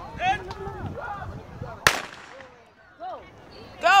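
A starting pistol fires once for the start of a track relay race, a single sharp crack about two seconds in that echoes briefly.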